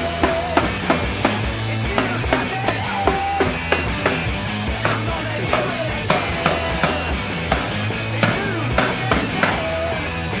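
Rock music with a steady drum-kit beat, electric guitar and bass.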